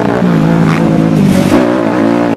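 Dirt bike engine running at a steady pitch under throttle, heard from on board the bike, its pitch wavering briefly near the end.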